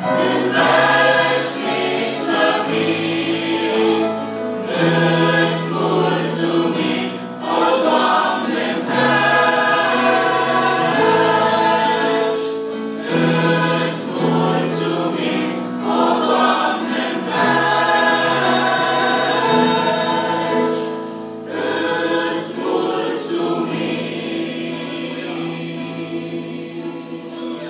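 Mixed choir of men and women singing a sacred song, in long held phrases with brief breaks between them, somewhat softer in the last few seconds.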